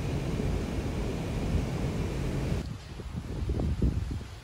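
Wind buffeting the microphone: a steady rumbling hiss that drops off sharply about two and a half seconds in, leaving a few irregular low gusts.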